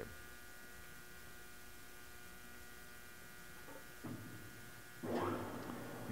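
Victor 24120G engine lathe, with its 15 HP main motor, running with a steady hum of several tones. About four seconds in there is a click, and after it the low part of the hum grows fuller.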